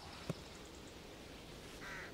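Faint woodland ambience with a small click about a third of a second in and a short bird call near the end.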